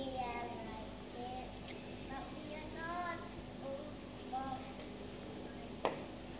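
Young children's voices, short calls and chatter heard at a distance, over a steady low hum. A sharp click comes near the end.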